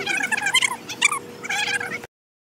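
Birds calling: a string of short, high, repeated calls in quick clusters.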